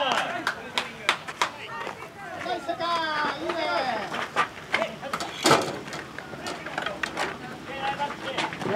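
Voices calling out across a ball field in short shouts, mixed with scattered sharp clicks and knocks; the loudest knock comes about five and a half seconds in.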